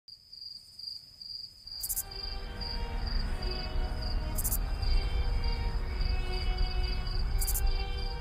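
Crickets chirping in a steady, even pulse, joined about two seconds in by a low drone and held music tones that swell and grow louder. Three brief high hisses cut across, about two, four and a half, and seven and a half seconds in.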